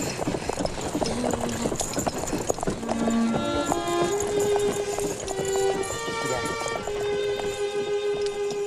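A horse-drawn wagon on the move: irregular clopping of hooves and rattling of the wagon. A slow bowed-string melody comes in about three seconds in and plays over it.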